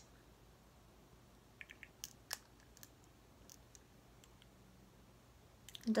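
A handful of faint, sharp clicks over a quiet room background, most of them in the first half: a glass dropper pipette knocking against the neck of a small glass serum bottle as it is handled.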